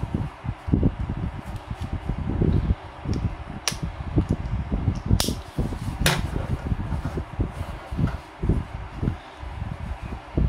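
Handling sounds of a black elastic running waist belt with a plastic buckle being moved about on a wooden table: dull knocks and rustling throughout, with three sharp clicks spread over the middle of the stretch.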